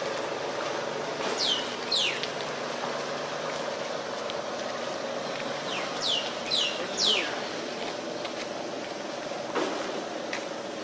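Short, sharp downward-sliding bird chirps, a couple about one and a half to two seconds in and a quick cluster around six to seven seconds in, over a steady outdoor hum.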